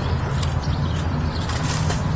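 Steady low outdoor rumble with a few faint light clicks.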